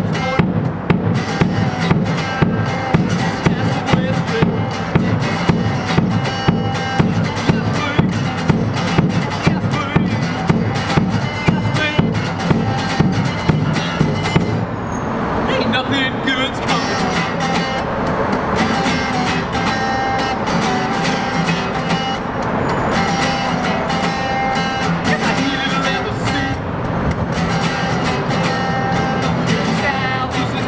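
Strummed acoustic guitar in an upbeat country-rockabilly song, with a bass drum kicked on the beat about twice a second. About halfway through the kicks stop and the guitar plays on.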